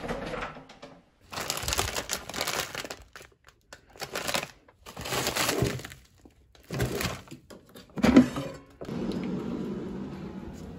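Plastic food packaging crinkling and rustling as it is handled, a bag of frozen broccoli florets among it, in several short bursts with brief silences between. A single thud about eight seconds in is the loudest sound.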